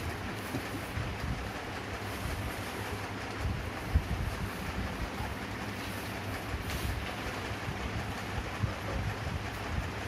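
Steady low rumble and hiss with soft rustling and bumps as a blanket is handled close to the microphone, one louder thump about four seconds in.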